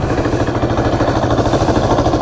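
Small Yamaha motorcycle's air-cooled engine idling steadily with an even pulse, hot after standing in traffic.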